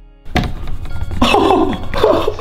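A sharp thunk about a quarter second in, then a dry-erase marker squeaking against a whiteboard in short pitched strokes as a circle is drawn.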